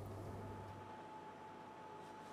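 Quiet room tone with a faint steady hum; a lower hum fades out about a second in.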